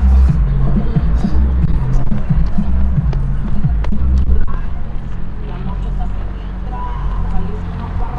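Loud song with heavy, pulsing bass and a singing voice.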